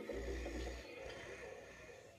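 Handling noise from the recording device as it is reached for and moved: a low rumble in the first second, then faint rustling that fades near the end.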